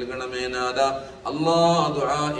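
A man chanting an Arabic supplication (dua) in a melodic, drawn-out recitation, holding one long note near the end.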